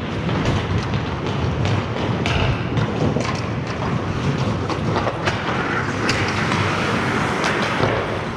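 Ice hockey being played in a large indoor rink: skate blades scraping the ice and sticks clacking on the ice and puck, many sharp clicks over a steady low rumble.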